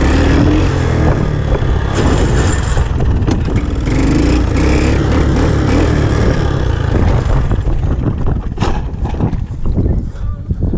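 Honda ATC 200 Big Red three-wheeler's single-cylinder four-stroke engine running steadily under way on a gravel road, with wind rushing over the microphone. The engine is running on vegetable oil in place of motor oil. Near the end it eases off as the machine slows.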